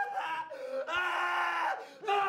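A young man screaming and wailing, hurt and terrified: a short cry, a brief lower sob, then one long held scream that starts about a second in.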